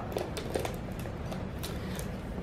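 Light scattered clicks and rustles of a leather handbag being handled and lifted by its top handle, over a low steady room hum.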